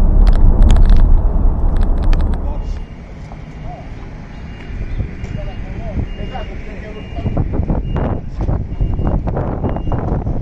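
Road noise inside a van's cabin while driving through a tunnel, a loud low rumble that cuts off about three seconds in. Then a short high beep repeats evenly about one and a half times a second, like a vehicle's reversing alarm, with voices.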